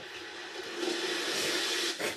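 A steady hissing rush of noise that swells about a second in and cuts off sharply at the end.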